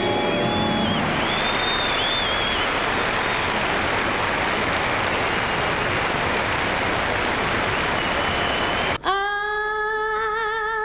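Concert audience applauding, with a few whistles early on, as the band's last notes die away. About a second before the end it cuts abruptly to a woman singing a held note with vibrato.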